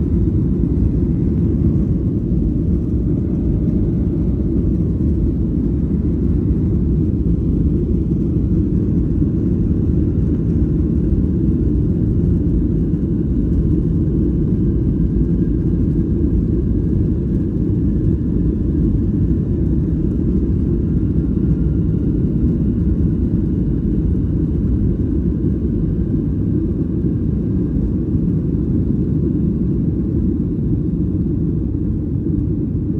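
Cabin noise of a WestJet Boeing 737 on its takeoff run: a loud, steady low rumble of the jet engines and the runway, heard from inside the cabin. A faint high engine whine comes in about halfway through.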